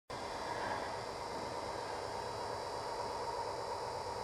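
Steady hiss with a faint high-pitched hum, unchanging, with no distinct sounds standing out.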